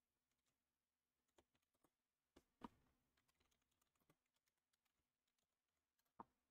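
Faint, scattered keystrokes on a computer keyboard, with the loudest clicks about two and a half seconds in and again near four seconds.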